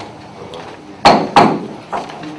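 Two sharp gavel strikes on a wooden table, about a third of a second apart, each ringing briefly. They call the council meeting back into session after a recess.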